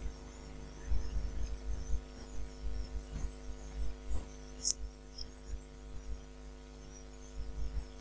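Steady electrical mains hum with a low rumble underneath, the background noise of the recording microphone, with one brief high blip about four and a half seconds in.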